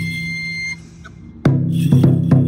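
Taiko drum music. A high held note over light drumming breaks off less than a second in. After a short lull, a loud taiko drum strike rings out, followed by another near the end.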